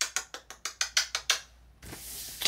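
A quick run of about a dozen short, sharp ratcheting clicks, roughly seven a second, from paper packaging on a new laptop box being torn by hand; it stops abruptly about a second and a half in.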